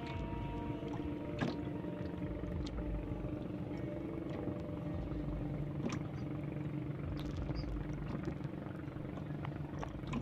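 A boat's engine running steadily with a low drone, with water lapping against the hull and two sharp knocks or splashes, about a second and a half in and about six seconds in.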